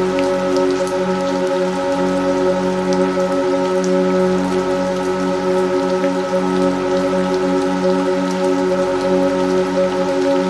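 Steady rain with scattered drop ticks, mixed with an ambient drone of several long-held synthesizer tones that neither change nor stop.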